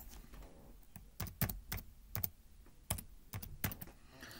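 Computer keyboard being typed on: about ten quick key clicks, starting about a second in, as a short word is entered.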